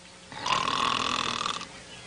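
A sleeping cartoon animal snoring: one long snore of just over a second, starting about half a second in.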